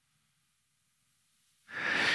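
A man draws a breath near the end of a pause in his speech. Before it there is only faint room tone.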